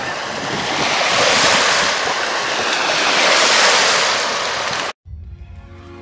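Small waves washing onto a sandy river shore, the wash swelling and easing. The sound cuts off suddenly about five seconds in, and soft background music begins.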